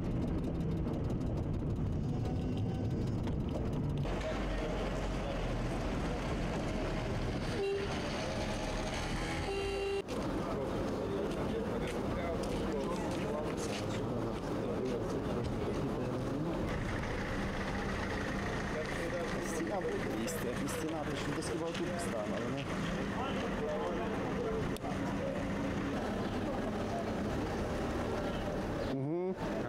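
Outdoor ambience of indistinct background voices and vehicle noise, broken into several edited segments. Two short horn-like toots come about eight and ten seconds in.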